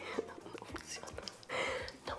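Quiet room tone with a few faint clicks, then a short breathy hiss about one and a half seconds in, like a person's breath.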